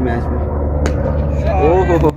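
A man speaking in short phrases over a steady low rumble, with one sharp click a little under a second in.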